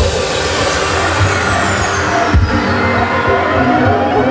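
Loud DJ-mixed dance music playing through club speakers. A high sweep falls in pitch over the first few seconds, and the track breaks briefly for a heavy low thump about two and a half seconds in. A rising tone begins near the end.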